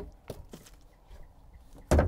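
A fold-out rear bench seat being lowered into place: a couple of small clicks, then a single sharp thud near the end as the seat settles onto its fold-down metal leg.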